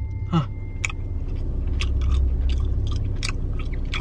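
A person chewing a small pink candy, with scattered short wet mouth clicks, over a steady low hum.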